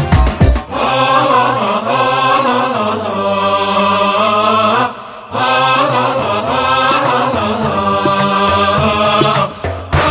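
Nasheed soundtrack of slow chanted singing in long held notes. A drum beat stops under a second in, leaving the voices, which break off briefly about halfway before going on.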